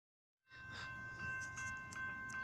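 Railroad grade-crossing warning bell ringing in quick, even strokes of about two to three a second, starting about half a second in. The ringing means the crossing signal is active, warning of an approaching train.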